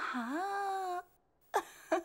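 A person's drawn-out wailing vocal sound: the pitch dips, then rises and holds for about a second before breaking off. After a brief silence, quick repeated voice sounds start near the end.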